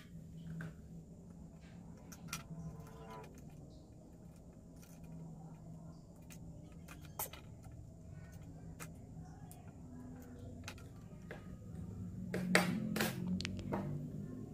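Faint clicks, taps and scrapes of wires and a screwdriver being handled at contactor terminals, over a low steady hum, with a few louder clicks near the end.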